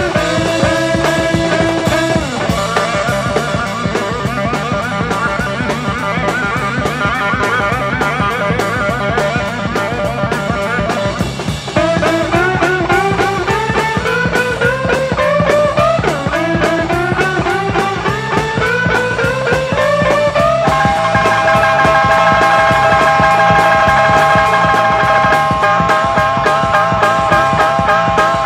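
Live electric blues band playing an instrumental boogie: a steady drum and bass beat under a lead line of wavering held notes, with several slow rising slides in the middle and long sustained notes near the end.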